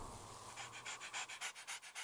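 A dog panting quickly and faintly, about six or seven short breaths a second.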